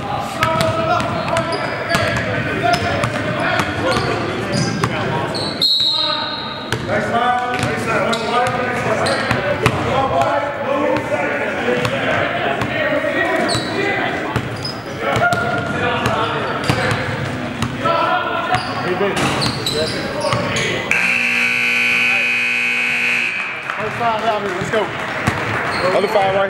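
A basketball game in a gym: the ball bouncing on the hardwood court and players shouting to each other, all echoing in the large hall. A steady scoreboard horn sounds for about two seconds near the end.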